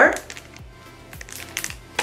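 Quiet background music with a steady low beat, with a few faint clicks from small cardboard boxes being handled in the second half.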